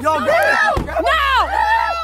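Excited shouting, the voices high-pitched and strained. A low bump of handling noise on the microphone comes about three quarters of a second in.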